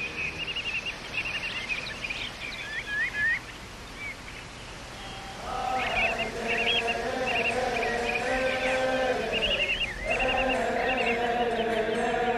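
Small birds chirping and twittering, with a steady held drone of sung or played notes coming in about halfway through and running under the birdsong.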